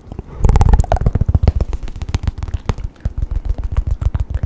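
Close-miked ASMR trigger sounds: a fast, dense patter of clicks and taps over low thumps on the microphone, loudest about half a second in.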